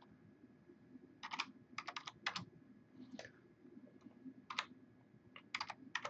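Computer keyboard being typed on, faint keystrokes in short uneven runs of a few keys with pauses between them.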